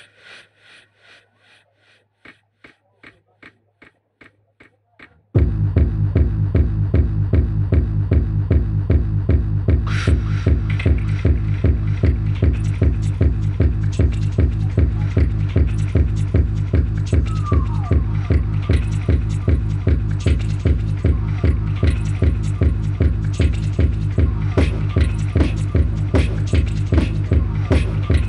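Live-looped techno beat built from vocal percussion on a Boss RC-505mk2 loop station: faint, evenly spaced clicks for about five seconds, then a loud, steady, fast-pulsing beat with heavy bass suddenly kicks in.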